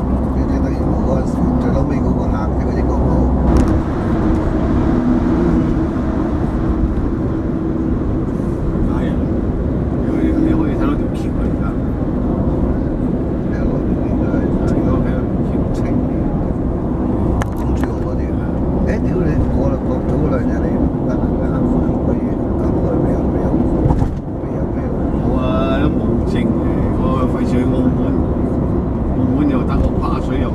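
Steady road and engine noise heard from inside a car's cabin at expressway speed, a continuous low rumble of tyres and engine.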